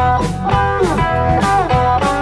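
Blues-rock band playing an instrumental passage: a lead guitar line with notes bending down in pitch, over bass and drums.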